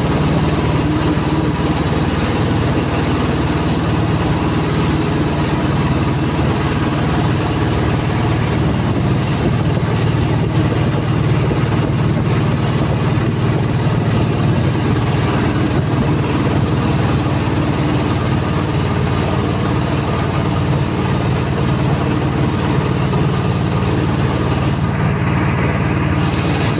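A river boat's motor running steadily at an even speed, a constant low hum with no change in pitch.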